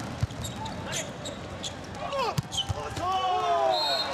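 Indoor volleyball rally: a few sharp ball hits and shoes squeaking in short gliding squeals on the court floor, mostly in the second half, over steady arena crowd noise.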